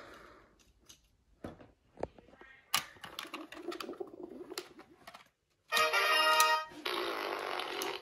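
Small plastic clicks and taps on a toy game, then about six seconds in the toy plays an electronic sound effect: a pitched, tuneful part for about a second, then a noisier part for about another second.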